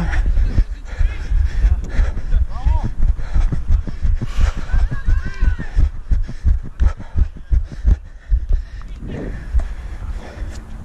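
Footfalls and jolts of a player running on artificial turf, picked up by a camera worn on the body: a rapid, uneven series of low thumps.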